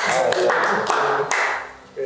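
A small group clapping, the applause fading out about a second and a half in.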